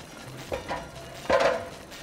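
Sound effects of an audio story: two knocks about a second apart, the second followed by a short clatter.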